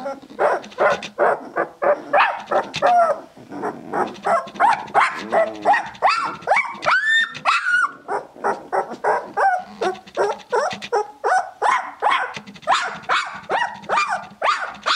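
Two-week-old Tibetan Mastiff puppies squealing and whining, short cries coming two or three a second, with a few longer rising-and-falling whines in the middle.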